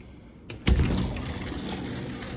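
Sliding glass patio door unlatched and rolled open along its track: a click and a thump about half a second in as it comes free, then a steady, smooth rolling sound.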